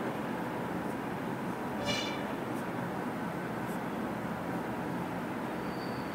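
Marker pen writing on a whiteboard: a short, high squeak about two seconds in and a few faint strokes, over a steady background hiss.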